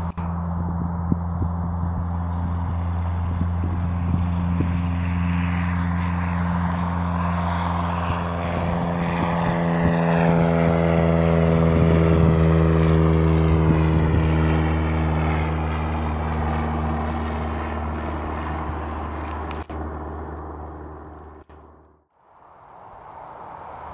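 Reims-built Cessna F172P Skyhawk's four-cylinder piston engine and two-blade propeller at takeoff power as it rolls down the runway and climbs out. A steady low drone that grows loudest as the plane passes close about twelve seconds in, drops in pitch as it goes by, then fades and cuts off at the end.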